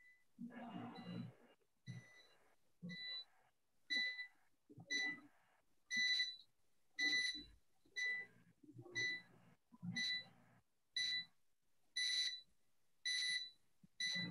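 An electronic alarm beeping about once a second, each beep a short, high-pitched tone lasting about half a second. It is faint and comes through an open microphone on a video call.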